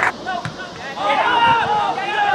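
A person's voice speaking or calling out, the words not made out.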